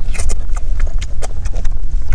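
Close-up eating sounds from someone biting and chewing a piece of cooked fish: a quick, irregular run of wet smacks and sharp clicks from lips and teeth, over a steady low rumble.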